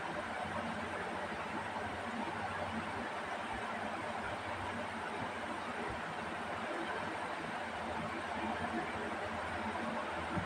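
Steady background noise, an even hiss throughout, with a few faint soft low thumps now and then.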